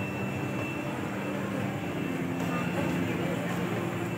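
A 1996 LG escalator running steadily downward: a continuous mechanical hum and rumble from its drive and moving steps, with background voices of people around it and a faint high whine in the first half.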